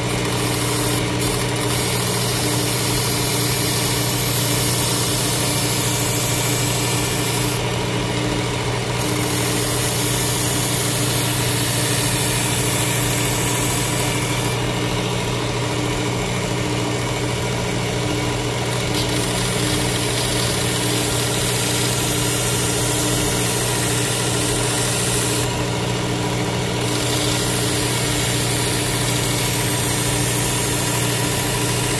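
Work Sharp Ken Onion electric sharpener with its blade grinding attachment running steadily, the motor and belt giving a constant hum, while a straight razor is floated lightly on the moving belt with almost no pressure. A high hiss over the hum drops away briefly three times.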